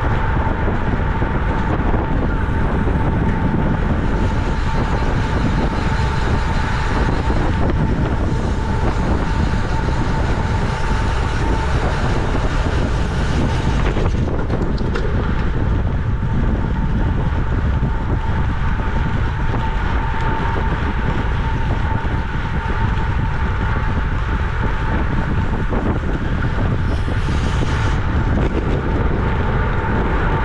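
Wind rushing over a bicycle-mounted camera's microphone at racing speed, mixed with tyre and road noise. A steady thin tone runs beneath it throughout.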